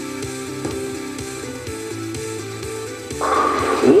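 Broadcast background music with a steady stepped melody, heard through a TV speaker. About three seconds in, a louder clatter breaks in as the bowling ball crashes into the pins for a strike.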